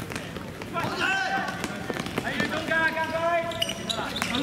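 Players' voices shouting across a seven-a-side football pitch, including one long held call in the second half, with a few sharp thuds of the football being kicked and bouncing on the hard ground.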